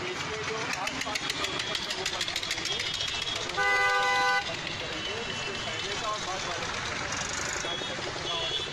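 A vehicle horn sounds once, a single steady toot of just under a second about three and a half seconds in, over busy street traffic noise.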